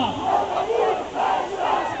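Crowd of demonstrators chanting a slogan back in unison, many voices shouting together in answer to a leader's call.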